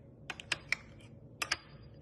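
Quick sharp clicks and taps of a knife against the plate while spreading jelly over peanut butter on French toast: a run of four or five, then a tight pair about one and a half seconds in, followed by a brief faint ring.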